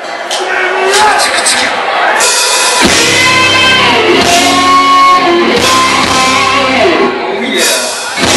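Live hard rock band starting a song: a thinner guitar sound with little bass at first, then the full band with drums and bass comes in loud about three seconds in.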